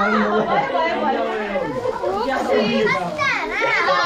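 Several voices, children's among them, talking and calling out over one another in a lively crowd, with high, excited calls near the end.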